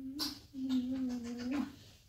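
A voice humming two long, steady, low notes, with a short click between them.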